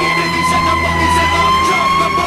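Fire truck siren sounding a steady, high wail that drifts only slightly in pitch, over the low rumble of the truck.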